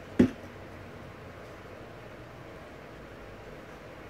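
One short thump just after the start as a metal skateboard truck is set against a penny board deck to test the fit. After that there is only low, steady room hiss.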